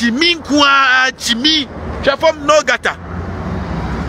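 Animated talking for about three seconds, then a steady low rumble of road-vehicle noise for the last second.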